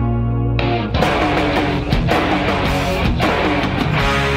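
Yamaha Revstar RS720BX electric guitar played with a distorted tone: a held chord rings out, then about a second in, dense strummed chords with sharp attacks take over.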